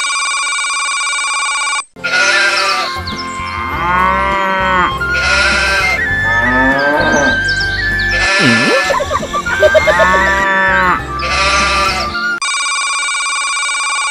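A comic musical ringtone: a steady electronic tone, then about ten seconds of a bouncy tune with bass, punctuated by repeated sheep-like bleats, then the steady tone again near the end.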